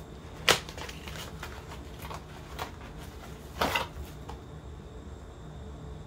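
A small paperboard product box being opened by hand. A sharp snap comes about half a second in as the flap is pried free, and a short scraping rustle of card comes about three and a half seconds in, with a few faint ticks between.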